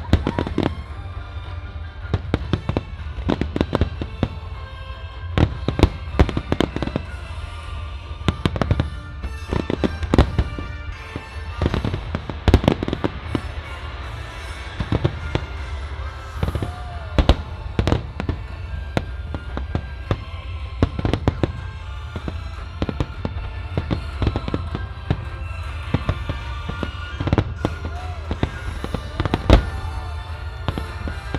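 Aerial fireworks shells bursting in rapid, irregular volleys of sharp bangs, with music playing along under them in a display set to music.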